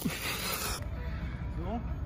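A crumpled plastic wrapper crinkling in the hand, stopping abruptly under a second in. After that there is a low outdoor rumble and a short rising voice.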